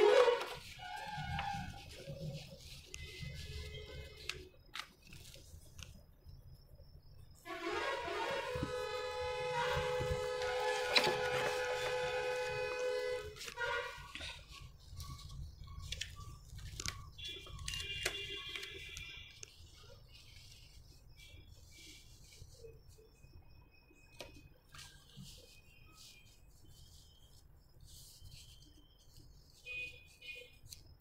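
Light rustling and tapping of paper pattern pieces being handled on cloth. About eight seconds in, a steady horn-like tone sounds for about six seconds, and a fainter, higher tone follows a few seconds later.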